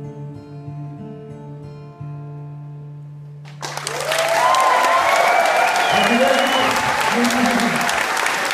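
A folk song ends on a long held note of voice and acoustic guitar. About three and a half seconds in, the audience suddenly breaks into loud applause and cheering, with whistles and shouts.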